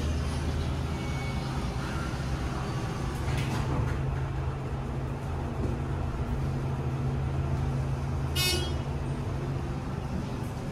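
TK Oildraulic hydraulic elevator car travelling, with a steady low hum throughout. A short high tone sounds about eight and a half seconds in.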